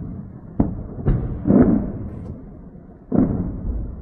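Distant explosions heard as four dull booms, each with a rumbling tail: three in the first two seconds and one more after about three seconds.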